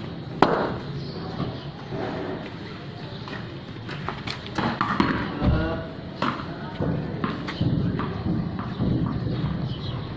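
A ball knocking during a game of cricket on a tiled yard, a few sharp knocks of ball on ground and bat, the loudest about half a second in, with indistinct voices.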